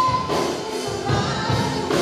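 Live church worship song: a woman's voice singing, holding a note at the start, over keyboard and drums with a steady beat.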